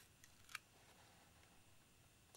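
Near silence, broken by one short click about half a second in as a fingernail picks at the edge of masking tape on a clear acetate model canopy.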